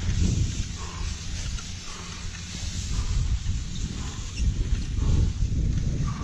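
Wind rumbling on the microphone over the hiss of a ski and bike tyre running over snow on a ski-bike, with faint puffs of heavy breathing about once a second.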